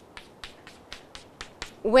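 Chalk tapping against a chalkboard as short ray strokes are drawn one after another, a quick even series of about four clicks a second. A woman's voice starts near the end.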